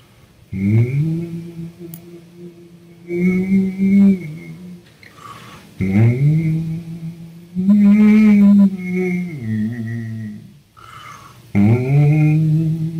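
A man's voice humming a slow, mournful wordless melody in long held notes, each sliding up into pitch, in several phrases with short breaks, standing in for the sad score.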